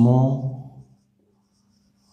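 A man's voice holding out a drawn-out word for about the first second, then near silence with only a faint steady hum.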